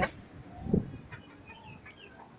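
An improved kienyeji chicken gives a single short, low cluck about three quarters of a second in.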